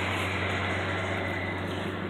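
A steady low hum under an even haze of background noise, slowly fading.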